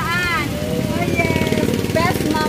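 A woman's high, delighted exclamation rising and falling, then laughing voices, over the steady pulsing of an idling engine.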